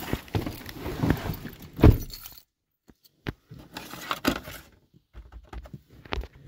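Someone getting into a vehicle's cab: keys jangling, rustling and knocks of the door and seat, with the loudest thump a little before two seconds in. The sound cuts out abruptly a couple of times.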